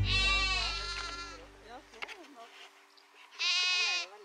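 A lamb bleating twice: a long, wavering, high-pitched bleat at the start and a shorter one near the end. Background music fades out under the first bleat.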